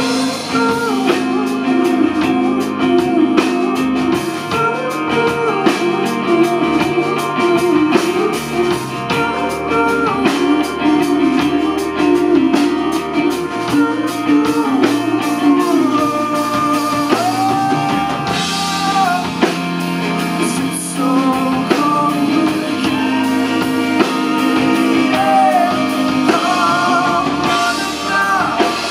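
Live rock band playing: electric guitar, bass guitar and drum kit, with a male voice singing at times.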